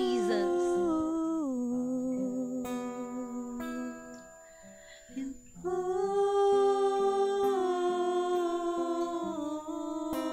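A woman singing long held notes into a microphone over a softly plucked acoustic guitar, a slow worship song. Her voice steps down in pitch, fades out about four seconds in, and comes back on a new sustained note near six seconds.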